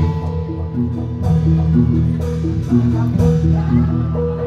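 Javanese gamelan music for a jathilan dance: bronze metallophones strike a steady, repeating melody of short notes over a low sustained bass.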